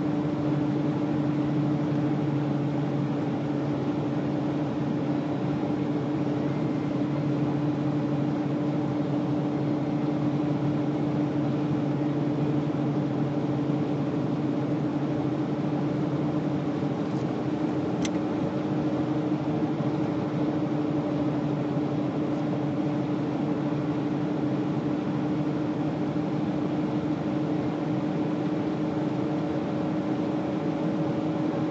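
Car cruising at a steady speed: an even engine drone with a constant low hum over road and wind noise, and a single short click about 18 seconds in.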